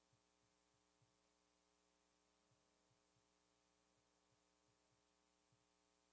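Near silence: a faint steady hum, with a few very faint low ticks.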